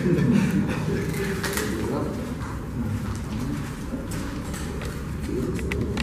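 Low talk and murmuring voices, with a few light clicks as plastic draw balls are twisted open.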